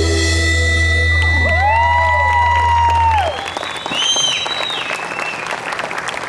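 A live band's closing held chord with a low sustained bass note, cut off about three seconds in, then audience applause and cheering.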